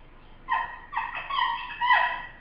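A bird calling about four times in quick succession, starting about half a second in, each call a pitched note with overtones.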